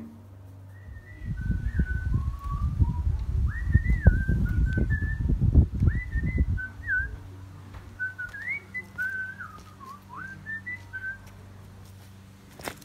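A person whistling a meandering tune of clear, sliding notes in short phrases, over a low rumble that is loudest in the first half.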